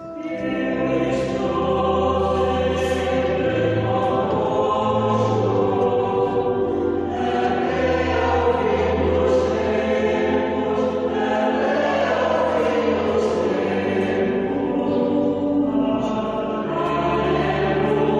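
Choir singing a slow sacred piece in long held chords, with steady deep notes sustained underneath; a new phrase swells in at the start.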